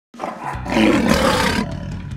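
A roar-like sound effect in an intro sting, swelling over the first second and fading away near the end, over a low steady music bed.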